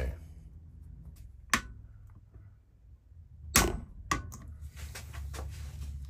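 Screwdriver working the slot of a stuck stud on a heater matrix held in a vice: a few sharp metal clicks and knocks, the loudest about three and a half seconds in, over a low steady hum.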